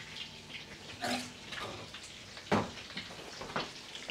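Kitchen handling sounds: several knocks and clinks, the loudest about two and a half seconds in, over a faint steady hiss.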